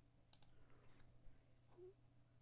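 Near silence with a few faint computer mouse clicks about a third of a second in, over a low steady hum.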